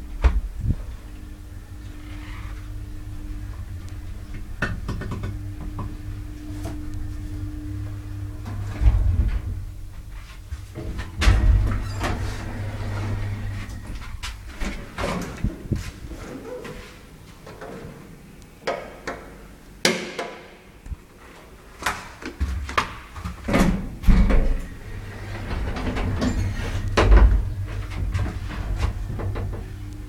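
Old elevator running: a steady low hum from the car and machinery, broken by a string of clicks and knocks from its door and mechanism.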